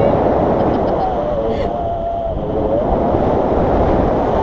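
Wind rushing over the action camera's microphone in flight under a tandem paraglider, a steady noise. A faint wavering voice sounds under it between about one and three seconds in.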